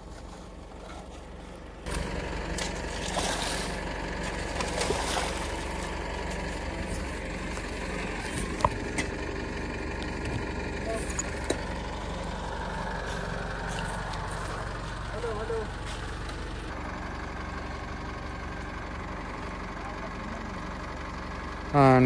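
A steady low hum at first, then from about two seconds in an Isuzu D-Max pickup's engine idling steadily, with a few sharp clicks over it.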